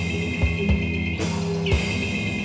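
Live rock band playing an instrumental passage: drum kit beats under a steady high sustained tone. A brief burst of crashing noise comes a little past halfway.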